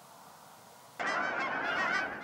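A flock of geese flying overhead, many birds honking at once. The honking starts suddenly about a second in, after a moment of near silence.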